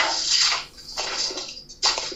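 Footsteps through dry fallen leaves, in about three rushing bursts, heard over a phone's audio.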